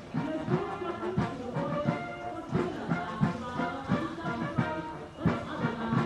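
Brass band music with held notes over a steady drum beat.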